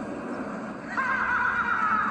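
A monster's high, wavering screech from the TV episode's soundtrack, starting about a second in and running on as a harsher, steady rasp.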